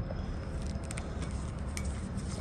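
Steady low outdoor town background noise, with a few faint clicks about a second in and again near the end.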